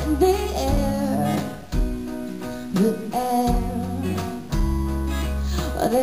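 Live song: acoustic guitar being played with held low notes underneath, an instrumental passage between sung lines.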